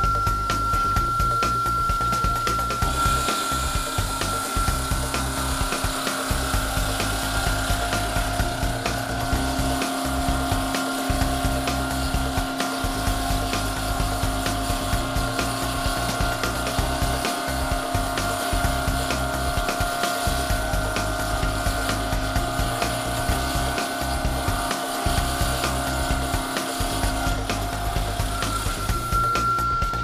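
Northwood SawJet bridge saw's diamond blade cutting a stone vanity top, a steady whine with a hiss that starts about three seconds in and stops shortly before the end. Background music with a steady beat plays underneath.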